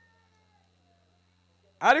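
A pause with only a faint, steady low hum, then a man's voice through a microphone starts sharply near the end.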